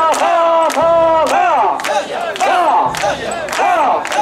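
Mikoshi carriers shouting a rhythmic carrying chant in unison as they bear the portable shrine. The calls are loud and repeated, each held and then falling off, with sharp clacks scattered among them.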